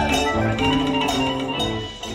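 Live band playing a song with drums, bass and electric guitar, a steady beat of about two strikes a second, heard through the room.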